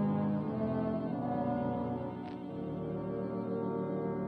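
Symphony orchestra in a live concert recording of a modern violin concerto, holding sustained low chords with brass prominent. A new, higher note comes in and is held from about halfway through.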